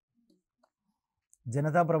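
A pause in a lecturer's talk: near silence with a few faint small clicks, then his voice starts speaking again about a second and a half in.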